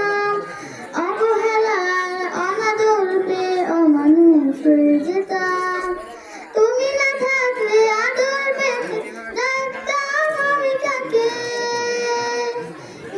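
A young girl singing a Bengali Islamic gojol (devotional song) solo into a handheld microphone, with long held notes that bend in pitch and short breaths between phrases about one and six seconds in.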